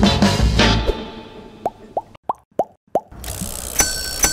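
Upbeat drum-backed music fades out about a second in, followed by five quick rising cartoon pop sound effects in a row, one for each device icon popping onto the screen. New music with high bell-like tones starts near the end.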